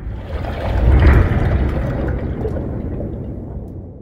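Intro-logo sound effect: a deep, noisy rumbling whoosh that swells to a peak about a second in, then fades away slowly.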